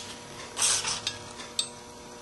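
Paper and a handheld heart-shaped craft paper punch being handled: a short rustle of paper about half a second in, then a single sharp click.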